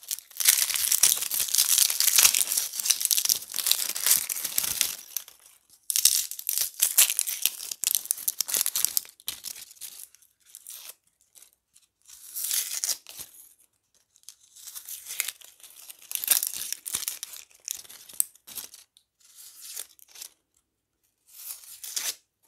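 Dry, papery onion skins crackling and tearing as they are peeled off an onion by hand. The crackling comes in bursts of a few seconds with short pauses, thinning to scattered crackles in the last few seconds.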